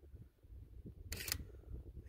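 A camera shutter firing once, a short sharp click about a second in, over a low rumble of wind and handling on the microphone.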